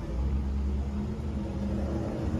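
Low, steady rumble of a motor vehicle engine.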